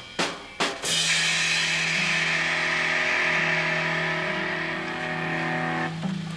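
Live rock band: a few quick drum hits, then a loud held chord with ringing cymbals over a steady sustained bass note for about five seconds, which drops away near the end.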